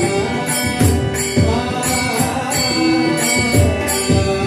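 Devotional bhajan music: many small hand cymbals (tal) clash in a steady rhythm over low pakhawaj drum strokes and the held tones of a harmonium.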